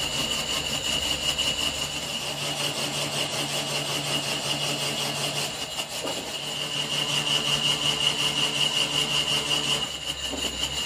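Metal lathe running and turning a steel semi-trailer axle spindle, a steady machining noise with a constant high-pitched tone over a low hum. There is a brief break about six seconds in.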